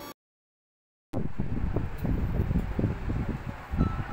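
About a second of dead silence at an edit cut, then a steady low rumble with rustling, like handling or wind noise on the camera's microphone.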